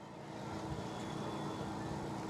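Faint steady low rumble and hiss of background noise, with a faint even hum, in a pause between spoken words.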